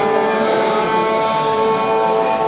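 Carnatic concert music with long, steady held notes: the violin bowing over a sustained drone, with no drum strokes.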